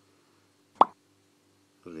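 A single short electronic pop with a quick upward sweep in pitch, just under a second in.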